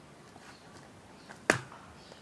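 A single sharp slap about one and a half seconds in, made by a hand striking during a martial-arts block-and-strike move, with a couple of faint ticks just before it.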